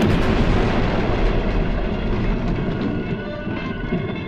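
Animated-cartoon explosion effect: a sudden loud blast, then a few seconds of continuous rumbling noise as blasted rock falls away, over orchestral score.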